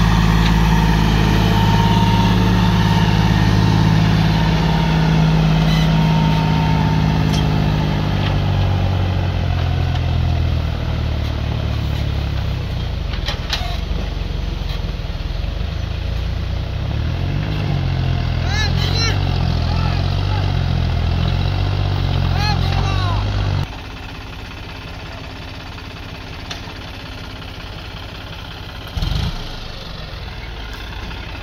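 John Deere tractor's diesel engine running under load as it pulls a trolley full of sand, its pitch shifting now and then. About two-thirds of the way through the sound drops suddenly to a quieter engine running, with a short low thump near the end.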